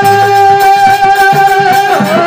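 Harmonium holding one steady note over dholak drum strokes, in an instrumental passage of a Rajasthani folk bhajan.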